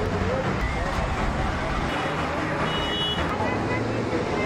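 Steady street traffic noise with many people talking over one another, and a brief high-pitched tone about three seconds in.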